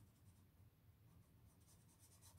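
Faint scratching of an HB graphite pencil shading on sketchbook paper in quick, repeated strokes; otherwise near silence.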